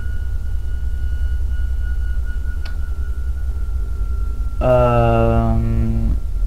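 A steady low hum with a faint high-pitched tone over it, a single click about two and a half seconds in, then, a little over a second before the end, a man's long held vocal sound, a drawn-out 'ehh' or 'mmm' on one pitch.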